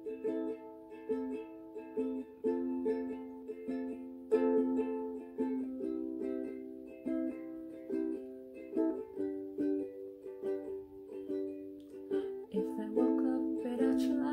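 Ukulele strummed chords in a steady rhythm, with the chord changing every few seconds.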